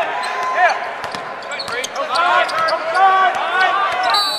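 Live basketball play on a hardwood court: the ball being dribbled and many short, arching sneaker squeaks as players cut, over indistinct voices of players and spectators.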